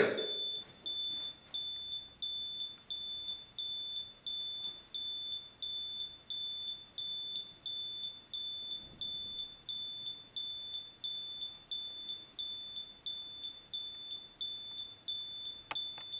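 Built-in 85-decibel horn of an alarm beacon light sounding a high-pitched beep, repeating about twice a second: an alarm going off.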